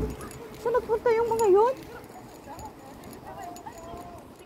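A person's voice calling out in a drawn-out, wavering tone for about a second, starting just under a second in, after a low thump at the very start. Fainter voices follow.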